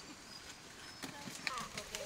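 Dry corn stalks and leaves rustling and crackling as people push through a standing field of dried maize, with a few sharp snaps. Faint voices come in near the end.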